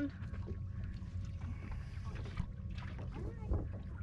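Boat's outboard motor idling with a steady low hum, and a faint voice about three seconds in.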